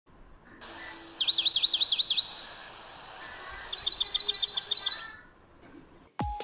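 A songbird's song: two runs of fast, evenly repeated high chirps, the first about a second in and the second, longer run near four seconds.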